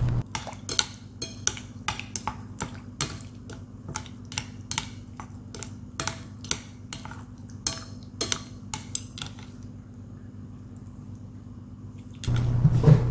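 Wooden chopsticks stirring a runny mắm nêm sauce in a ceramic bowl, clicking against the bowl a couple of times a second. The clicking stops about three-quarters of the way through.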